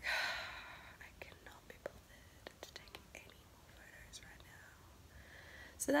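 A woman's long breathy sigh that fades over about a second, followed by quiet breathing and a few small clicks.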